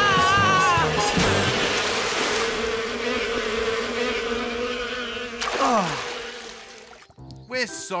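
Cartoon bee swarm buzzing as a steady drone over background music, with a wavering cry in the first second. A falling glide sounds about five and a half seconds in, and then the sound fades away.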